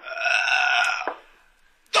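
A man's drawn-out, strained groan lasting about a second, the sound of a wounded man in a radio drama.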